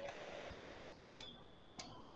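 Faint computer keyboard keystrokes: a few separate clicks spaced out, the first just at the start and two more in the second half, over a low hiss.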